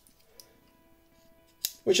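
Faint background music, with a small tick about half a second in and one sharp click near the end from the folding tools of a Swiss Army knife being handled.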